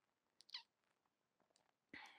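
Near silence: room tone, broken about half a second in by a brief, faint squeak that falls in pitch, and by a dull thump at the very end.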